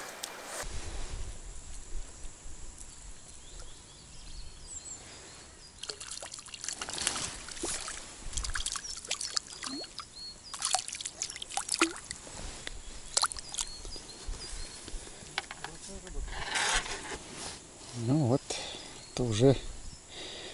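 A float rod is struck, with a sharp splash and spray of water as the line and float come out. Then a hooked roach is drawn in across the surface in a series of small splashes and trickles of water. A man's voice is heard briefly near the end.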